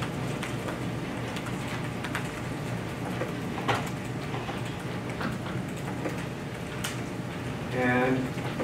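Steady lecture-room noise, a ventilation hiss and hum, with a few faint scattered clicks.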